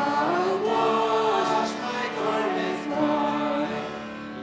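A mixed group of men's and women's voices singing a hymn in harmony into microphones, with held notes. The phrase ends near the end.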